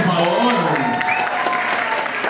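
Audience applauding, with voices over the clapping.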